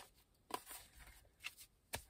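Tarot cards being handled: a few faint, short taps and rustles, about half a second in, near one and a half seconds and just before the end.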